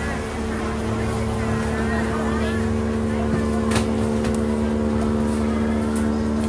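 Motorboat engine running at a steady speed: a low rumble with a steady hum that sets in just after the start.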